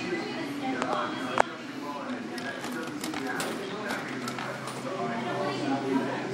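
Background voices talking, with a sharp click about a second and a half in and a few fainter ticks after it.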